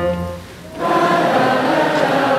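A piano phrase dies away, and about a second in many voices take up a sung note together, like a crowd singing in unison.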